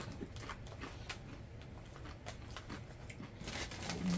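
Faint, irregular crunching of a person chewing Doritos tortilla chips, with a rustle of the chip bag near the end.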